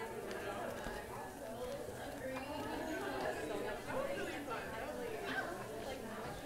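Indistinct background chatter of several women's voices talking over one another, with no single clear speaker.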